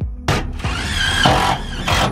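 Background music with a steady beat, over which a cordless drill runs in one burst of about a second and a half, its motor whine wavering as it drives screws to fix wooden beams to the van's wall ribs.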